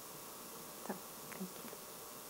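Quiet room tone, a steady hiss, with two or three brief faint sounds about a second in.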